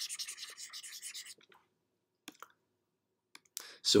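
Stylus tip scratching rapidly back and forth across a tablet screen while erasing digital ink annotations, for about the first second and a half. A few faint clicks follow.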